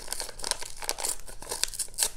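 A white paper envelope being torn open by hand: irregular crackling and tearing of paper.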